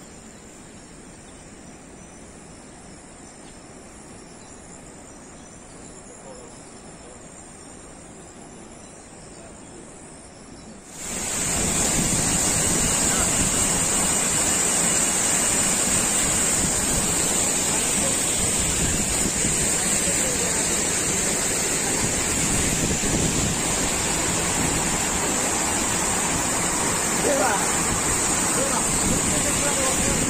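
A faint, steady outdoor background with a high insect sound. About eleven seconds in it cuts suddenly to the loud, steady rush of a waterfall and a mountain stream pouring over rocks.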